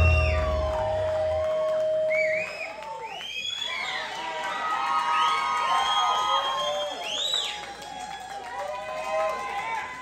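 A heavy-metal band's last chord rings out and stops in the first two seconds. Then a small club audience cheers, shouting and whooping.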